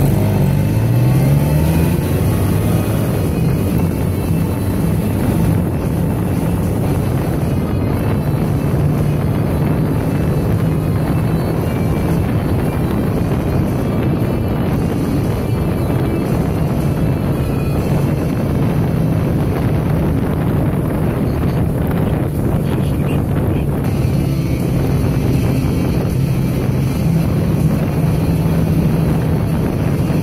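Vehicle engine pulling away from a stop, its pitch rising over the first couple of seconds, then running steadily at cruising speed with road noise.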